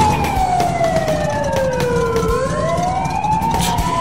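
Police car sirens wailing: two slow rising-and-falling tones out of step with each other, one sweeping down for about two seconds while the other climbs, over a low rumble.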